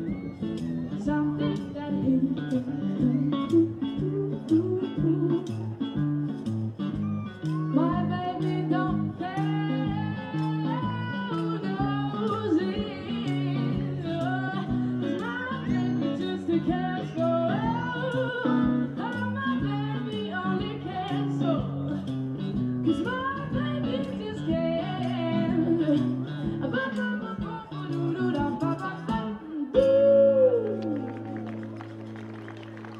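A woman singing a blues song over electric guitar, the guitar picking chords alone for the first several seconds before the voice comes in with long wavering notes.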